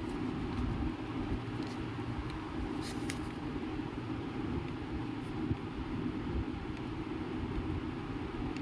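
Steady low background rumble during a pause in speech, with a few faint clicks.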